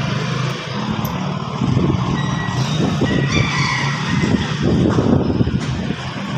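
Small motorcycle engine carrying two riders, running close by and then pulling away under throttle, louder from about a second and a half in.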